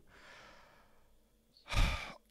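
A man breathing into a close microphone between phrases: a soft breath just after he stops talking, then a short, louder intake of breath near the end with a low thump of air on the mic.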